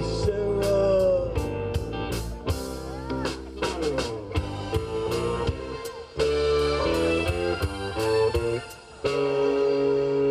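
Live band playing an instrumental passage in a blues-rock vein: an electric guitar lead with bent notes over electric bass and drums. It drops out briefly near the end, then comes back with long held notes.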